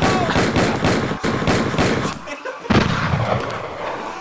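Airsoft gun fired in a rapid string of shots at close range, with a short break a little over two seconds in before the firing resumes, and a person yelling as he is hit.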